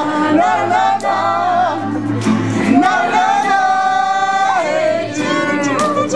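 A woman singing to her own acoustic guitar accompaniment, with a long held note in the middle that slides down at its end.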